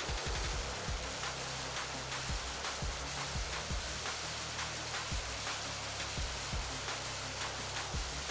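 A string of firecrackers bursting in rapid, dense cracks and bangs, over background music with a steady low bass.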